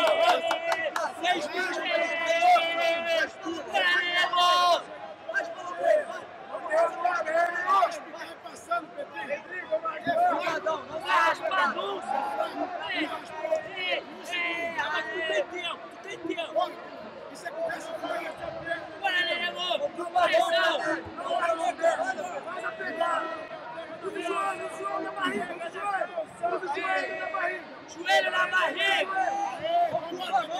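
Men's voices shouting and calling out over crowd chatter, with a steady hum underneath.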